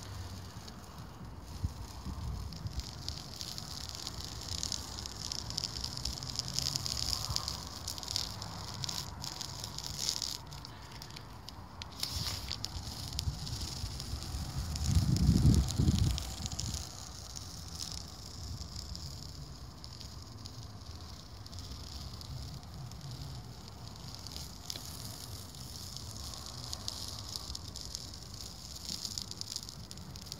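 Masking tape being peeled off a narrowboat's steel hull, a continuous uneven crackling hiss as it pulls away from the still-wet bitumen blacking. A brief low rumble comes about halfway through.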